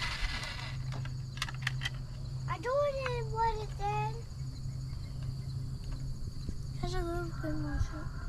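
Rural outdoor ambience: a steady drone of insects over a low steady hum. A few short pitched calls come about three seconds in and again near the end.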